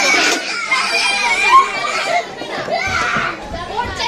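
Several children's voices chattering and calling out as they play, with a louder shout about a second and a half in.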